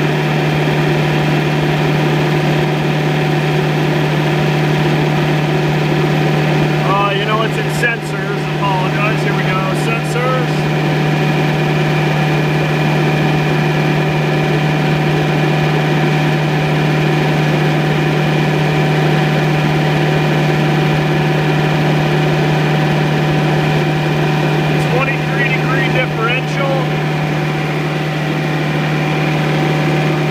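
Thermo King SB-210 trailer refrigeration unit running steadily, its diesel engine and compressor giving a constant deep hum with steady higher tones, the unit cooling strongly.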